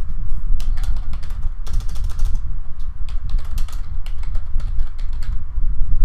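Computer keyboard being typed on, a quick run of keystrokes with brief pauses that starts about half a second in and stops shortly before the end, over a steady low hum.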